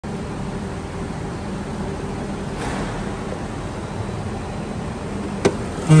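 Lexus IS250's 2.5-litre V6 idling steadily as a low, even hum, with one sharp click near the end.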